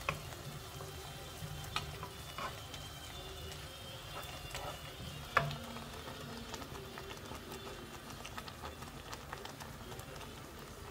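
Chopped onions sizzling softly as they fry in oil in a nonstick pan, stirred with a wooden spoon that knocks lightly against the pan a few times, once more sharply about five seconds in.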